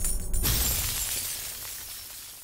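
Jingly outro music cuts off about half a second in with a sudden crash-like sound effect, a bright burst of noise like shattering glass, that fades away slowly.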